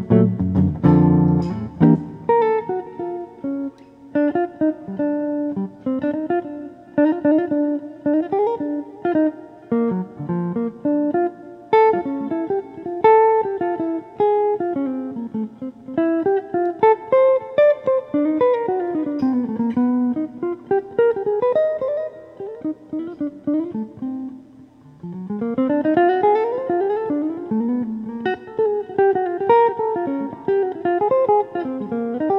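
Solo jazz guitar played on an archtop guitar: a couple of seconds of full chords, then single-note melodic lines with quick runs that rise and fall, chords mixed in. About 25 seconds in, a long rising run.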